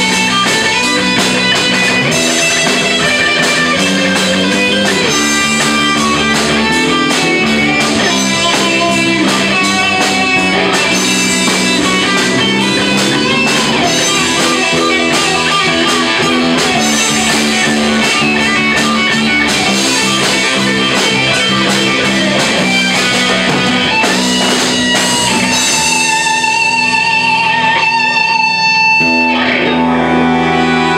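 Live rock band playing an instrumental passage: electric guitar lines over bass guitar, with sharp percussive strokes throughout. Near the end the fuller sound thins out to a few held, wavering notes.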